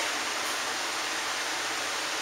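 Steady, even hiss of background noise, with no other sound standing out.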